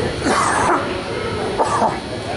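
Two short, sharp shouts from a person's voice in a gym, about a second apart.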